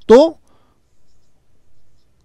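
A single short spoken word at the start, then faint strokes of a marker pen writing a digit on a whiteboard.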